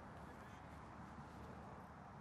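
Near silence: faint outdoor background hiss with no distinct sound.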